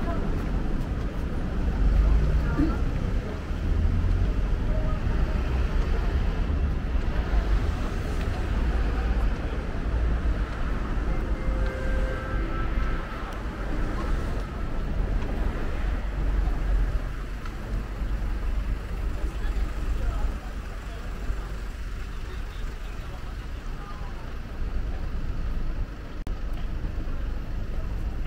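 City street ambience: a steady low rumble of road traffic, with passers-by talking.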